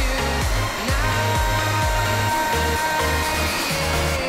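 Brushed 12 V DC motor running unloaded with a steady whir, drawing just under an ampere, under pop music with a steady bass-and-drum beat.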